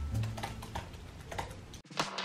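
Typing on a laptop keyboard: irregular, light key clicks that cut off abruptly near the end.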